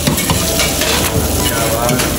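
An egg omelette frying on a hot flat iron griddle over a gas flame, sizzling steadily while a metal slotted spatula scrapes and turns it on the griddle.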